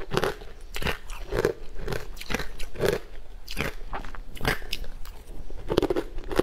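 Close-miked biting and chewing of frozen green sweet ice, with a run of sharp, irregular crunches about every half second to second.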